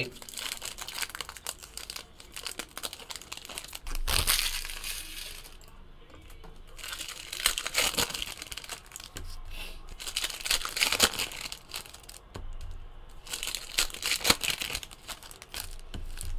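Foil wrappers of 2017 Bowman Chrome baseball card packs being torn open and crinkled by hand, in several bursts of crackling.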